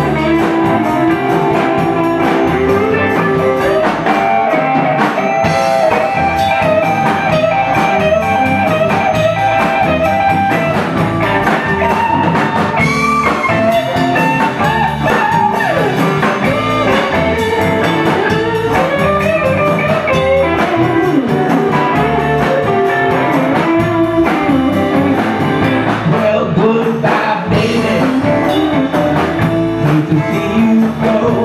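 Live blues band playing: electric guitar lines bending in pitch over electric bass and a drum kit.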